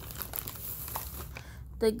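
Plastic shopping bags and packaging crinkling as items are handled and picked up, with a few light clicks.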